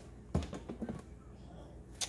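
A plastic pepper shaker set down on a granite countertop: one sharp knock about a third of a second in, followed by a few light taps.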